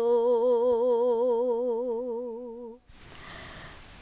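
A woman's unaccompanied voice holds one long note of a traditional Serbian folk song with a wide, even vibrato, fading out a little under three seconds in. It then cuts to faint outdoor background noise.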